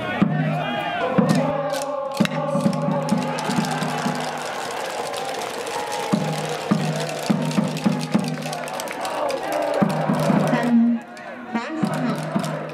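A cheering section in the stands: rhythmic music with a crowd chanting and shouting along. It dips briefly about a second before the end.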